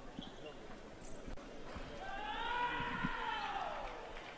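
A fencer's drawn-out shout after a touch is scored, about two seconds long, rising slightly and then falling in pitch. Before it come light taps of footwork on the piste.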